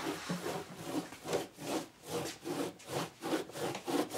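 A hand rubbing back and forth across a surfboard deck, about three strokes a second.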